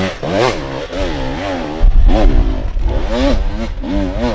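Enduro dirt-bike engine revving hard in quick bursts up and down as the rider climbs a steep, loose hill. It gets louder and deeper about two seconds in.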